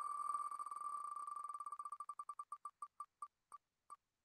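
The ticking sound effect of an online spinning name wheel (wheelofnames.com) as it slows to a stop: the ticks come so fast at first that they blur into one tone, then slow steadily and spread out, with the last few nearly half a second apart.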